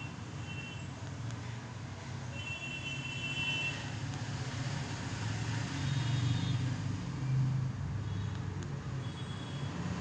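Steady low mechanical hum over a faint background noise, with a few brief, faint high-pitched tones.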